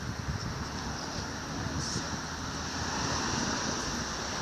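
Wind buffeting the microphone, a low uneven rumble over a steady high hiss of outdoor air.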